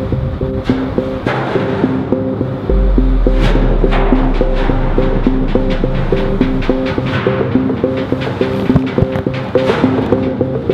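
Background music: a quick, repeating plucked-note figure, with a deep low note that comes in about three seconds in and fades away a few seconds later.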